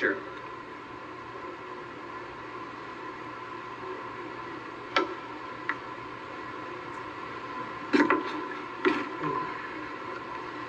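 A heated Phillips screwdriver being pushed through the wall of a plastic jug to make an air hole: a few sharp clicks about halfway through and louder crackles near the end, over a steady background tone from playback speakers.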